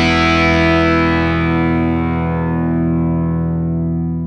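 Outro music: a distorted electric guitar chord left ringing, slowly fading.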